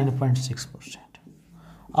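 A man's voice: a drawn-out word falling in pitch and fading out in the first half-second, followed by faint, soft voice sounds.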